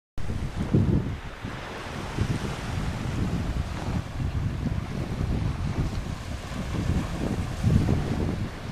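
Wind buffeting the microphone in irregular gusts, over the steady wash of small lake waves breaking on the shore.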